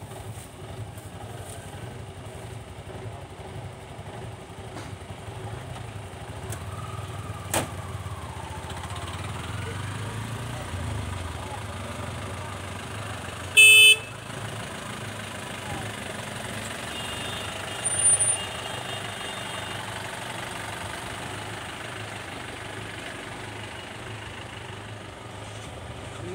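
A vehicle engine idles with a low, steady rumble. About fourteen seconds in comes a single short, loud horn toot, and about four seconds later a briefer, fainter high-pitched beep.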